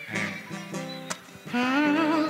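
Acoustic guitar strummed in a few chords. About one and a half seconds in, a voice comes in over it and grows louder.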